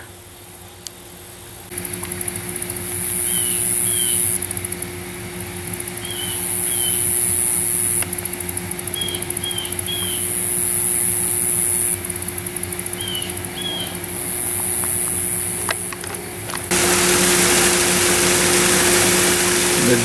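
A high, pulsing insect chorus, with a bird repeating a short rising two-note chirp every few seconds, over a steady low hum. About three-quarters of the way through it gives way to the steady rush of water spilling over a small creek dam.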